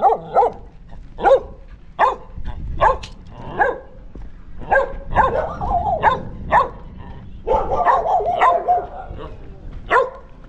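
Street dogs barking: about a dozen short, sharp barks spaced through the stretch, with a longer unbroken run of barking near the end.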